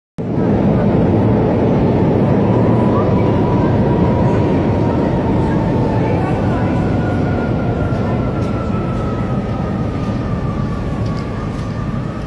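Kryvyi Rih underground speed tram (metrotram) coming into a vaulted underground station: a loud, steady rumble with a thin whine that falls slowly in pitch as the tram slows, easing off gradually toward the end.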